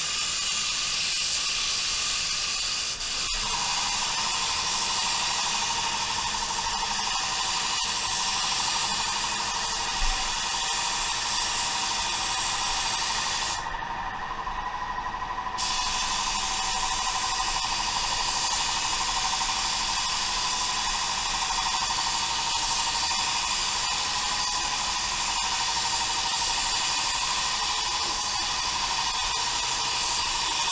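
Walcom Carbonio 360 Light HVLP spray gun with a 1.2 tip spraying clear coat at 33 psi, fan and fluid wide open: a steady air hiss. A steady whine joins about three seconds in, and the hiss thins briefly about halfway through.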